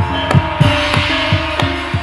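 Live Javanese gamelan music. Low drum strokes come about three a second, each dropping in pitch, over steady ringing metal gong-chime tones. A brief noisy wash rises about half a second in.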